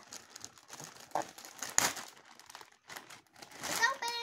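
Clear plastic packaging bag crinkling and rustling in irregular bursts as it is handled and pulled open. The sharpest crackle comes a little under two seconds in.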